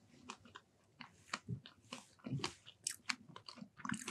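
Quiet chewing and mouth sounds of people eating soft muffins with whipped cream, with small faint clicks scattered through.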